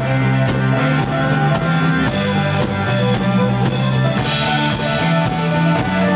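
A rock band playing live: an electric bass holding low notes that change about twice a second under drums and guitar. Cymbals wash over the music in the middle.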